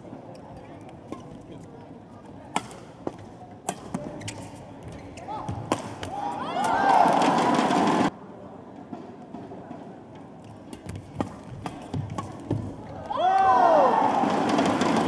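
Badminton rally: sharp racket strikes on the shuttlecock about every half second, with shoes squeaking on the court. A loud burst of crowd noise and squeaks follows for about two seconds as the point ends, and the crowd noise rises again near the end.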